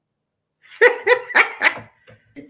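A person laughing: four short, loud pulses about a quarter second apart, starting just over half a second in.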